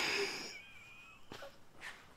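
A person's wheezing breath trailing off in the first half-second, followed by faint thin whistling tones and a couple of soft clicks.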